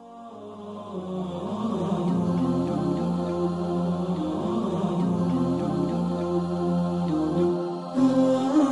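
Intro music of layered, wordless vocal chanting over a sustained low drone, fading in from silence over the first couple of seconds.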